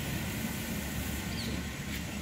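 Steady outdoor background rumble, in keeping with road traffic or wind at the microphone, with a faint short chirp about one and a half seconds in.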